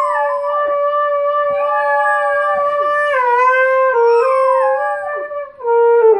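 A saxophone playing long held notes while a Weimaraner puppy howls along several times, its howls sliding up and down in pitch over the steady sax tones.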